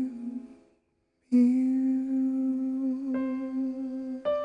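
Male vocalist singing a ballad's final words as two soft held notes: a short one, a brief pause, then a long sustained note. A piano chord comes in under it about three seconds in.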